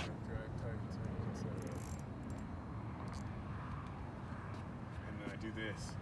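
A steady low rumble with faint voices in the background, early on and again near the end, and a few soft clicks.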